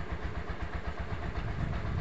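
A small engine idling with a steady low throb, about twelve beats a second.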